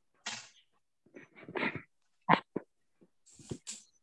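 Scattered short noises from participants' open microphones on a video call, the loudest a pair of sharp sounds a moment apart about halfway through.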